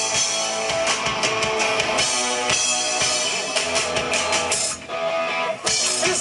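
Live indie rock band playing loudly: electric guitars, bass and drum kit. The band briefly drops out about five seconds in, then comes back in with the drums.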